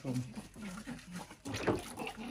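Newborn baby crying in short, broken cries while being bathed, with water splashing about one and a half seconds in.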